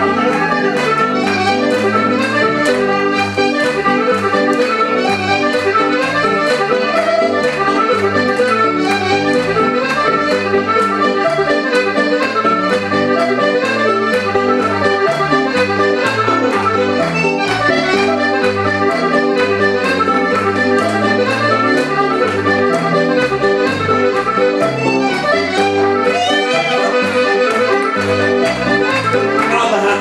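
Irish traditional set-dance music led by accordion, played at a brisk, steady beat for the dancers.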